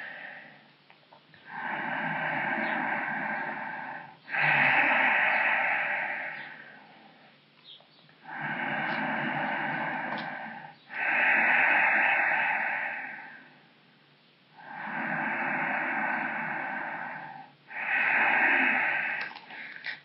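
A man's slow, deep breaths, clearly audible: three breath cycles of two long breaths each, about two and a half seconds per breath, the second breath of each pair louder.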